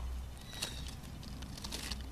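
Quiet outdoor background: a low steady rumble with scattered light clicks and rustles from an oak twig and its leaves being handled close to the microphone.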